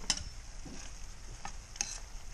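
Shrimp frying in melted butter in a pan on medium heat, a steady sizzle. A few sharp clicks sound over it: one just after the start and two near the end.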